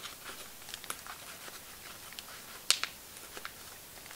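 Paper stickers being handled and tucked into a planner's pocket: faint rustling with a few light clicks, the sharpest a pair of quick ticks about two-thirds of the way through.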